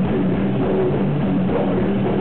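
Heavy metal band playing live at a steady loud level: distorted electric guitars and a drum kit.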